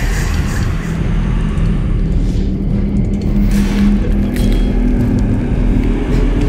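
Horror film soundtrack drone: a loud, dense low rumble with a held low tone that climbs higher in pitch in the second half.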